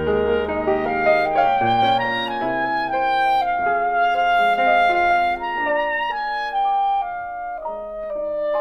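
Klezmer clarinet playing a slow Yiddish folk melody in long held notes over an acoustic band's chordal accompaniment.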